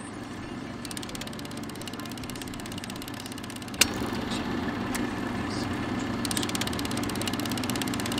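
Old film projector running, probably as a sound effect: a steady motor whir with fast, even clicking. A single sharp click comes just before four seconds in, and the sound runs a little louder after it.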